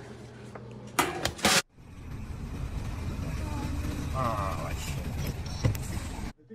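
A vehicle driving along a highway, its engine and road noise running steadily as heard from inside the cab. Just before this, about a second in, two loud sudden noises.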